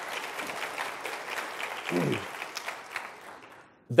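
Audience applauding, the clapping dying away near the end, with a brief voice sound about two seconds in.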